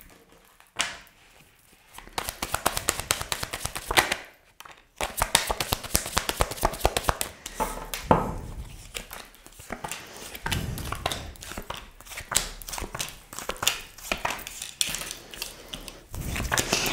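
Tarot cards handled and dealt by hand onto a desk: a long run of quick soft card flicks and taps, with a brief pause about four seconds in.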